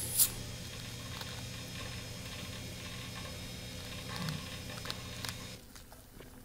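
Steady low hum and faint hiss from a silent stretch of a video clip played back over a sound system, with a brief loud noise right at the start. The hum drops away a little before the end.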